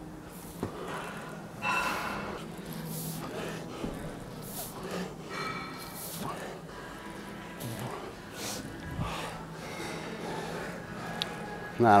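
A weightlifter's sharp, noisy breaths, about one every second and a half, in rhythm with the reps of a set of dumbbell lateral raises, over faint indistinct voices and a steady low hum.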